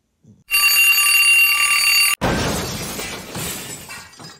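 An alarm sound effect rings steadily for about a second and a half, then stops abruptly and is followed at once by a loud smashing crash that fades away over about two seconds.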